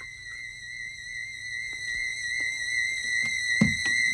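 A steady, slightly wavering high whistling tone holds throughout, while a low rumble beneath it slowly grows louder.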